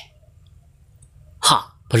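A brief pause in a spoken narration with only a faint low hum, then a short vocal syllable about one and a half seconds in, running straight into speech at the end.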